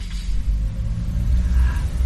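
A low, steady rumble with slight swells in level and little above it.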